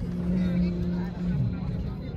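A steady low engine drone that drops in pitch about one and a half seconds in, over a constant low rumble, with voices in the background.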